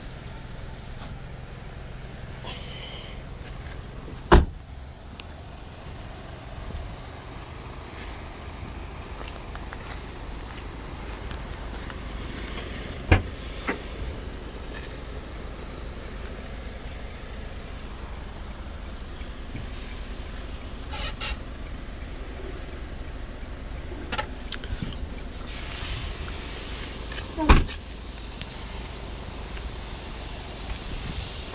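Steady low hum of the Kia Morning van's engine idling, heard from inside its cargo area, broken by a few sharp knocks; the loudest knock comes near the end.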